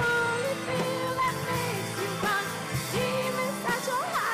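Live rock band playing, with electric guitars, keyboard and drums, and a melody line that bends and slides in pitch.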